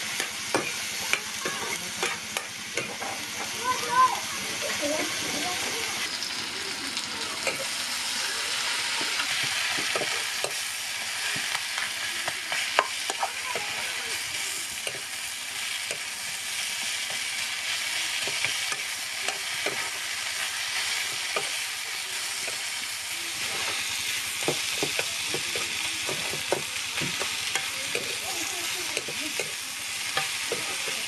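Chopped green chillies and potato frying in oil in a metal kadai, sizzling steadily while a metal ladle stirs and scrapes against the pan with frequent clicks and clinks. The sizzle grows stronger through the middle.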